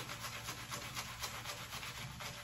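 Pearl synthetic-bristle shaving brush swirling soap lather on a bearded face: a faint, quick, rhythmic rubbing of several brush strokes a second.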